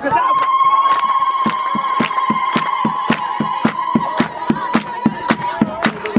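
A steady high-pitched tone that glides up, holds for about five seconds and cuts off near the end, over rhythmic claps or beats about three a second.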